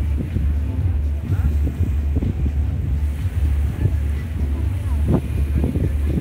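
Wind buffeting the microphone: a steady low rumble throughout.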